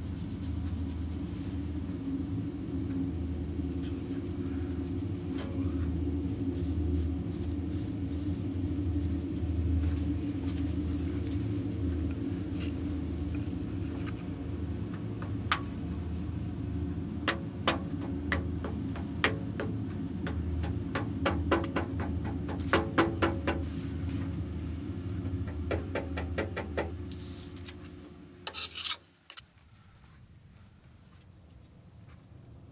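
Red casting sand being packed and rammed into a metal moulding flask: a run of short taps and knocks from about halfway on, in quick clusters. Under it is a steady low hum that stops shortly before the end.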